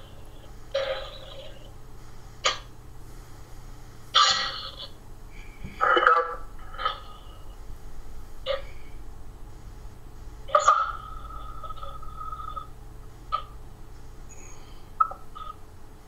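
Ghost box (spirit box) sweeping through radio stations: short, choppy snippets of broadcast voice and static every second or so, with a brief held tone about ten seconds in, heard over a video call. The sitters take the snippets for spirit voices answering, perhaps more than one talking to each other.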